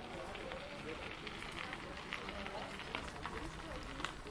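Footsteps on a path, heard as irregular light ticks, with indistinct voices of people nearby.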